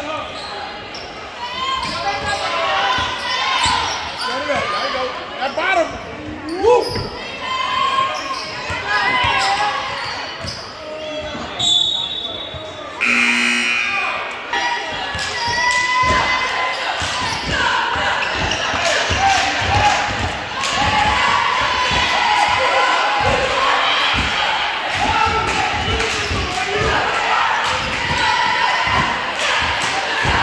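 Basketball game in a large, echoing gym: a ball dribbled on the hardwood court amid players' and spectators' shouts and chatter. Just before halfway a referee's whistle blows briefly, followed by a short buzzer.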